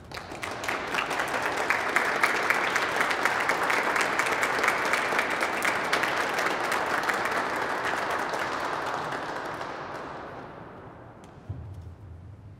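Audience applauding in a large, reverberant stone cathedral, building up within the first second and dying away over the last few seconds. Near the end a low organ note starts.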